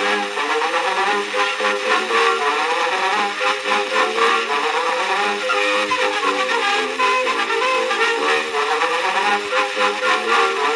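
Military brass band playing a medley, in a 1904 Edison acoustic recording: the sound is thin and narrow, with no bass.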